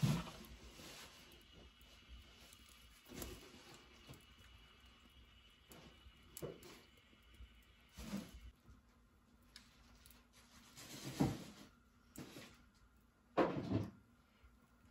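Wood fire under a lidded pot crackling in a clay stove, with a few scattered sharp pops and knocks over a low background; the loudest come about eleven seconds in and just before the end.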